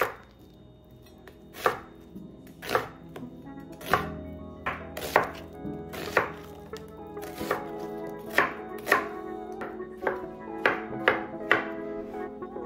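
Chef's knife chopping an onion on a wooden cutting board: a series of sharp knocks of the blade hitting the board, irregular and about one a second at first, then coming closer together in the second half.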